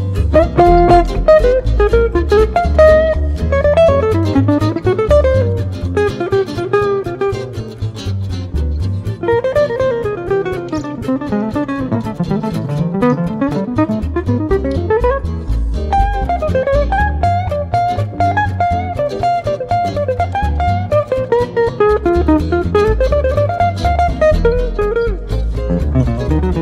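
Live acoustic jazz quartet of two archtop guitars, mandolin and upright bass playing a blues. A fast single-note melody line winds up and down over a steady plucked bass.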